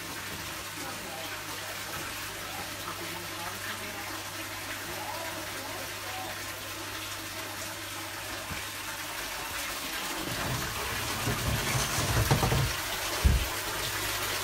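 Water splashing steadily into a half-drained aquarium, streams falling onto the lowered water surface during a water change, with a low steady hum underneath. In the last few seconds, louder rumbles and knocks as the phone is handled.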